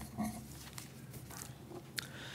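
A man's brief throat or nose noise close to the microphone, followed by faint small clicks and rustles in an otherwise quiet room.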